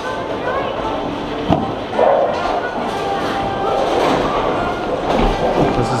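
Busy bowling-alley background noise, with a single sharp knock about one and a half seconds in.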